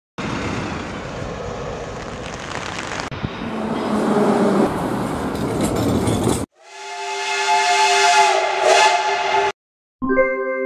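Street and vehicle noise for about six seconds, changing abruptly about three seconds in and cut off sharply. Then a held horn sounding several tones at once swells in, lasts about three seconds and stops suddenly.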